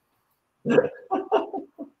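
A man laughing in a run of short bursts, starting about half a second in.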